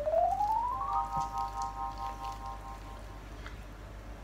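Synthesized musical sound effect: a bright tone that slides up in pitch for about a second, then holds as a steady chord and fades out about three seconds in.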